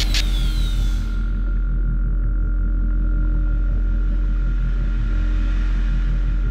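Electronic logo-intro sound design: a brief falling whistle-like sweep right at the start, then a deep steady drone with a thin held high tone above it.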